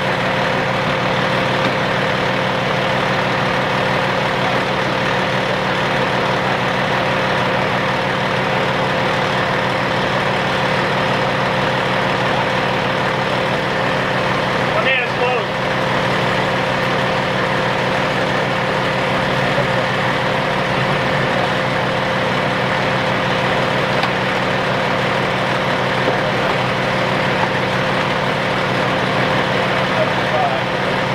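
Steady hum of an idling engine, with faint indistinct voices over it and a brief pitched sound about halfway through.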